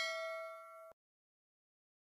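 Notification-bell ding sound effect: a bright chime of several bell tones ringing and fading, cut off suddenly about a second in.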